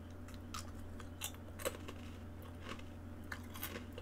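Faint, irregular small clicks and crackles close to the microphone over a steady low electrical hum.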